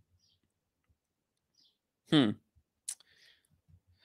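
A single sharp computer-mouse click nearly three seconds in, after a brief hummed 'hmm'; otherwise near silence.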